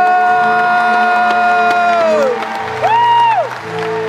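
A live band holding the closing chord of a country ballad. A long sustained melody note slides down and stops a little over two seconds in, and a short note swoops up and back down about three seconds in.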